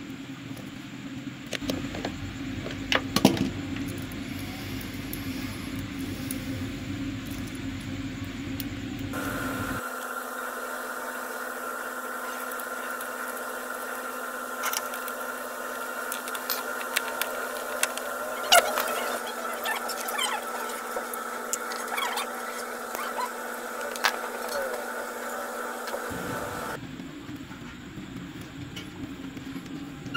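Scattered clicks and taps of steel pliers against metal battery terminal hardware as a cable is twisted and fitted onto a new terminal clamp, over a steady background hum whose character changes abruptly twice.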